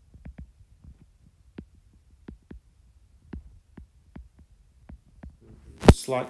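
Stylus tip tapping and clicking on a tablet's glass screen while handwriting, in irregular light clicks a few times a second. A single louder knock comes just before the end.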